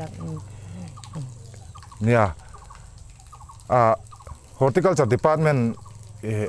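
Domestic fowl calling twice, two short calls with a rapidly wavering pitch, about two seconds in and again almost two seconds later.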